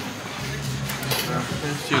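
Background hall ambience: indistinct voices of other visitors with a few faint clinks.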